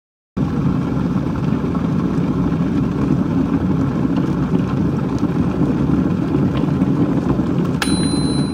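A loud, steady, low rumbling noise with no speech. Near the end a sharp click sets off a high, steady beep.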